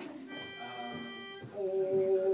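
A pitch pipe sounds one steady note for about a second, giving the quartet its starting pitch. About a second and a half in, the four barbershop voices come in together on a louder held chord.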